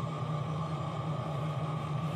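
Steady low background hum with an even hiss, with no distinct events: room noise.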